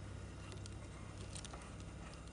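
Hotpoint fridge-freezer compressor running with a steady low hum. Faint light ticks and rubbing come from a hand handling the copper suction-line pipework at the back of the unit.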